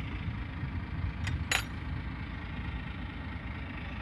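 Caterpillar 120K motor grader's diesel engine idling steadily, with two short sharp clicks or hisses about a second and a half in.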